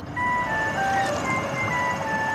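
Background music: a simple jingle-like melody of single clear notes stepping up and down, over a steady hiss.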